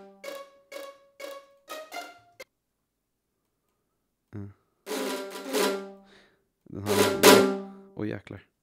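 Sampled strings playing back in a music-production session: a quick run of short, detached notes that stops about two and a half seconds in. After a pause, two loud, fuller hits with a drum-like crash sound, about five and seven seconds in.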